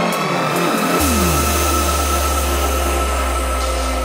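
Full-on psytrance track in a break. The rolling bass is absent at first, then a long held bass note comes in about a second in, under a steady high synth tone and falling synth sweeps.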